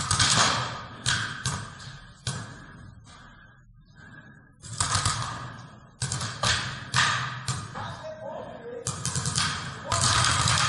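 Paintball markers firing in irregular volleys of sharp cracks, each echoing briefly in a large indoor hall, with paintballs smacking nearby cover.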